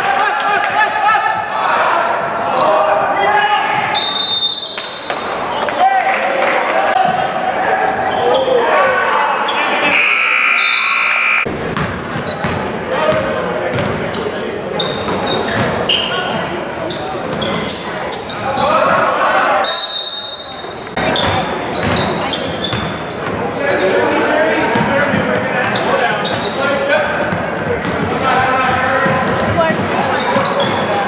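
Basketball game sounds in a large echoing gymnasium: a basketball dribbled and bouncing on the hardwood court, with players and spectators calling out. A few brief high steady tones cut through, about four, ten and twenty seconds in.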